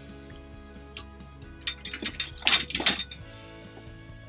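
The fold-out side rails of a toy hauler's ramp deck being unfolded and set up. There is a single knock about a second in, then a cluster of clanks and rattles between about 1.5 and 3 seconds, over background music.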